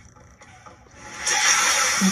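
Movie-trailer sound effect: a quiet moment, then a loud hissing rush that swells up about a second in and holds.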